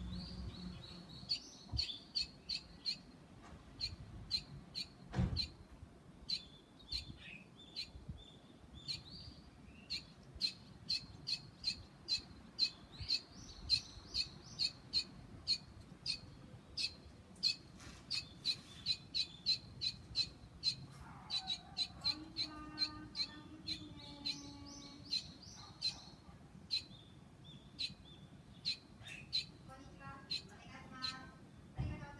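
Young barn swallow chirping over and over: short, high chirps, at times several a second.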